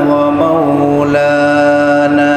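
A man's voice chanting Arabic in long held notes, stepping down in pitch about half a second in and shifting again about a second in. It is the sung testimony of faith that opens a Friday sermon.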